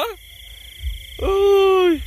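Crickets trilling steadily at night. About a second in, a person's voice gives one long drawn-out call that falls slightly in pitch, louder than the insects.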